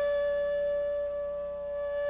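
Background music: one long, steady note held on a flute.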